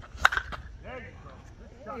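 A Suncoast slowpitch softball bat hitting a pitched softball: one sharp crack about a quarter second in. It is a solidly struck, long hit.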